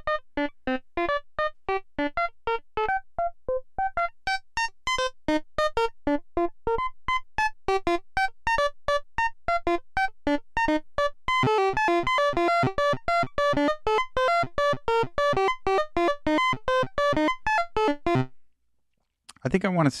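Modular synthesizer voice from a self-built VCO, quantized to C Dorian, playing a fast swung sixteenth-note sequence of short plucked notes that jump around in pitch. The notes get busier and fuller in the second half, then stop abruptly shortly before the end.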